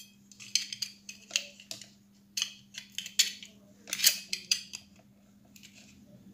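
Steel laminations and a sheet-metal clamp of a small transformer being handled and fitted onto the core: a run of sharp metallic clinks and scrapes, dying away for the last second or so. A faint steady hum sits underneath.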